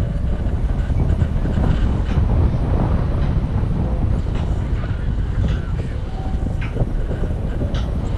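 Wind buffeting a camera microphone in paraglider flight: a steady low rumble that swells and eases.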